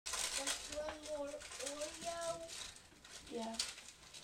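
A voice speaking a few soft words close to the microphone, ending with a short "yeah", with a few small clicks and rustles mixed in.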